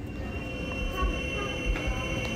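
A steady high-pitched tone held on several pitches at once, starting right at the cut, over irregular low thuds of footsteps from people walking.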